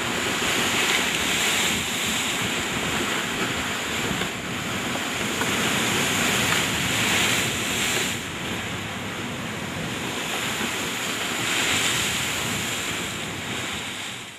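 Lake waves washing against the shore, mixed with wind noise on the microphone, swelling and easing in slow surges.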